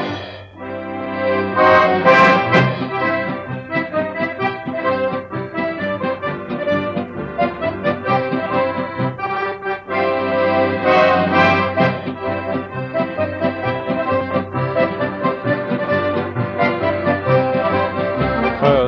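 Accordion orchestra playing an instrumental interlude between sung verses of a Dutch party-song medley, from a c.1950 Decca 78 rpm record, its sound cut off above the middle treble.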